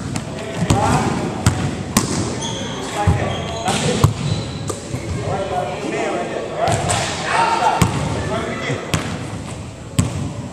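Basketball bouncing on a hardwood gym floor in irregular knocks as players run a drill, with voices talking in the background of a large gym.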